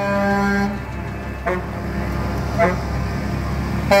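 A vehicle horn sounding, held until just under a second in, then two short toots, over the low rumble of passing engines.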